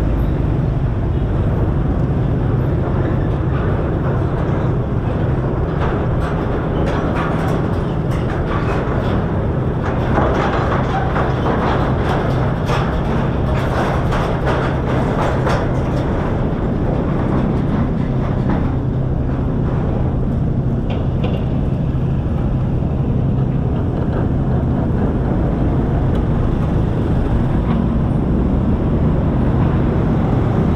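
Motor scooter engines and a car running at low speed in a slow queue, a steady low hum and rumble. From about six to sixteen seconds in there is a run of rapid metallic clicking and rattling as wheels cross the steel grating of the ferry ramp.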